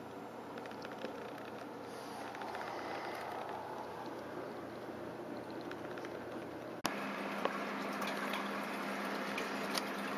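Quiet room noise with a few faint clicks. About seven seconds in there is a sharp click, after which a steady low hum sets in.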